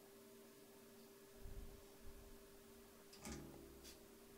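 Near silence: a faint steady hum, with two soft knocks from the vero board and parts being handled on the bench. The louder knock comes a little after three seconds in.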